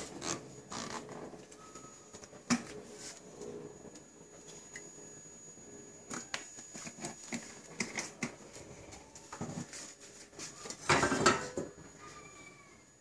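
Kitchen handling sounds: scattered light taps and clicks of crockery and a frying pan being moved, with a louder clatter about eleven seconds in.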